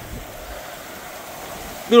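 Steady rushing noise of wind and rain in a thunderstorm.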